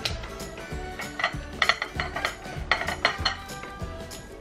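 Two short clusters of clinks and knocks from dishware as sliced pickled radish (danmuji) is tipped from a dish into a mixing bowl. Background music with a steady beat plays under it.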